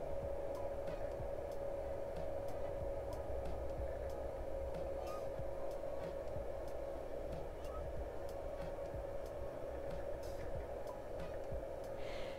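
Steady faint electrical whine over a low hum from the running off-grid solar equipment (inverter, charge controller, bench power supply), with a few faint scattered ticks.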